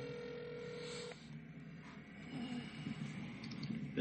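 A steady electronic tone on a telephone line for about a second, then faint, muffled voices over the line.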